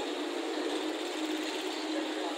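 A steady mechanical hum over an even background noise, with no distinct events.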